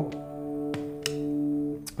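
Hagstrom Impala electric guitar, with its two Alnico 5 Retro S pickups and the neck pickup brought further into the mix, playing a chord that rings and sustains through an amp. There are a couple of faint pick clicks midway, and a fresh strike comes near the end.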